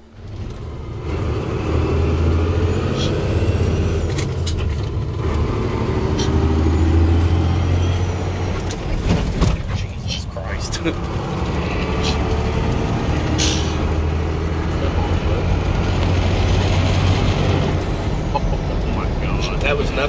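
Cummins 12-valve diesel with compound turbos pulling under load, heard from inside the truck's cab as a steady deep drone. The drone drops out briefly about ten seconds in, then comes back.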